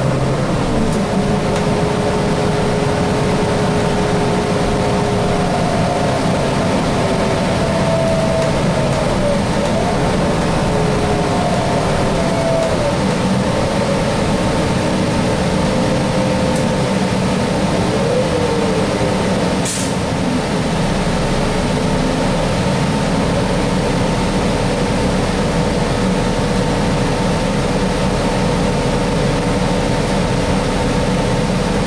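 Inside a 2018 Gillig CNG bus with a Cummins Westport L9N engine and an Allison B400R automatic transmission, driving: steady engine and road noise, with whining tones that glide up and down as it runs. A single sharp click about twenty seconds in.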